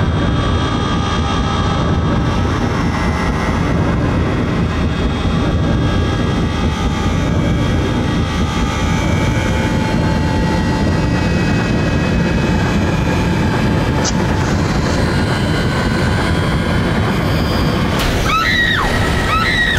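A steady, loud, low rumbling drone with faint held high tones above it, unbroken and without a beat: an ominous sound-design bed from a TV drama's score.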